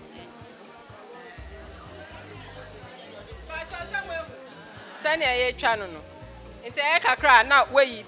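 Speech and background music: a voice in short phrases over music, louder in the second half.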